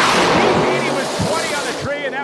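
Two nitrous-boosted drag radial cars at full throttle side by side down the strip: a loud, dense engine roar that fades from about halfway through as the cars pull away downtrack.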